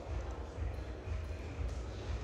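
Low, uneven rumble of room noise with faint, indistinct voices in the background.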